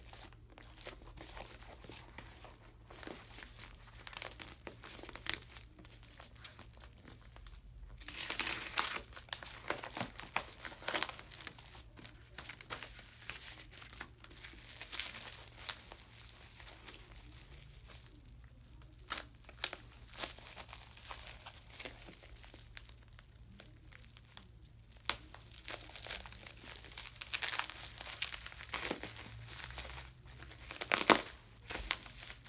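Packaging unwrapped by hand: a padded mailer and the clear plastic wrap around a phone crinkling and tearing in irregular stretches, with a louder stretch about eight seconds in.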